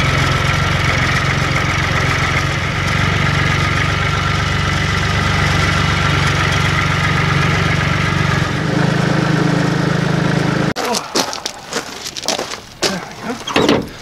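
Massey Ferguson 240 tractor engine running steadily while the tractor is driven, its pitch stepping slightly higher about eight and a half seconds in. It cuts off abruptly a few seconds before the end, giving way to short irregular knocks and rustles.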